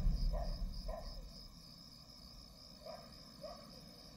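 Insects chirping in a steady high pulse about three times a second, with a few short lower chirps. A low rumble fades out during the first second or so.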